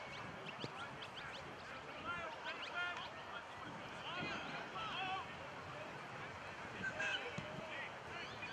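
Distant, indistinct voices of players and people on the sideline of an outdoor football field, with scattered short bird chirps.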